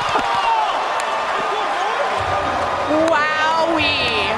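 Arena crowd cheering and shouting after a rally-winning point, with many voices blending into a steady din and a couple of short high shrill notes near the end.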